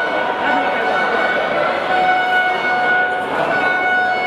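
A steady, high, horn-like pitched tone held for several seconds with brief breaks, over the noise of a crowd talking and shouting.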